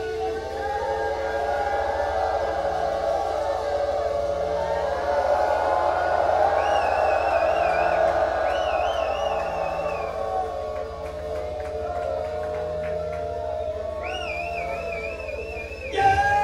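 Audience noise at a rock gig between songs, with a wavering, warbling high tone heard twice: about six seconds in, and again near the end. A steady low hum from the PA runs underneath.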